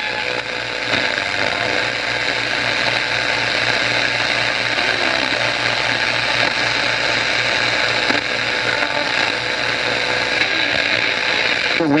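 Steady rush of radio static from a Zenith H845 vacuum-tube radio's loudspeaker, with a low hum that pulses at an even rate beneath it, as the set is tuned off the station's signal. The announcer's voice comes back at the very end.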